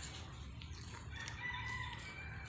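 A rooster crowing once: one held, pitched call starting about halfway in, over a steady low rumble.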